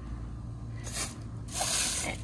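Plastic bag rustling and crinkling as it is handled, starting about a second and a half in, over a faint low hum.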